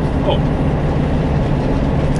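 Eura Mobil Terrestra motorhome on the move, heard from inside the cab: a steady low engine and road drone.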